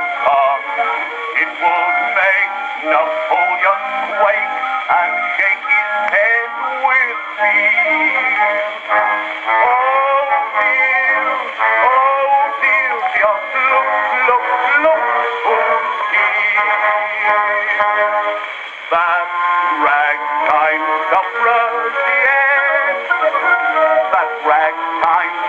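Ragtime music from a c.1912 acoustic-era record playing on a horn gramophone, with almost nothing below about 200 Hz or above 4 kHz, which gives it the thin, narrow sound of early records.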